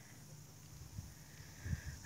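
Quiet outdoor ambience: a faint steady hiss, with a soft low thump about halfway through and low rumbles near the end.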